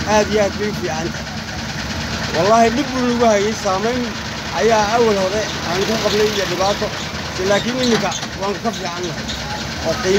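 The small engine of an auto-rickshaw idling steadily, a low, even pulsing under a man's voice.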